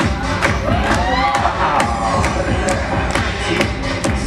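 Loud dance music from the DJ with a steady beat of about two strikes a second, and the crowd cheering and whooping over it about a second in.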